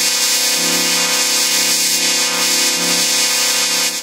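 Heavily effects-distorted logo audio: a loud, steady droning chord of many held tones under a dense layer of hiss, with no beat or melody.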